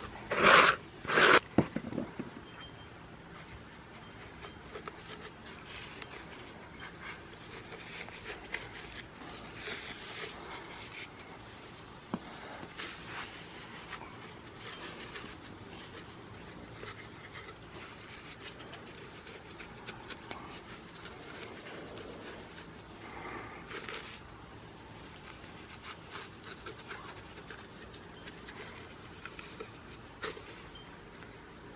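Soft, faint rubbing and scraping of a gloved hand smoothing wet mortar inside a flower-pot mould, after three short, loud hissing sounds about a second apart at the start.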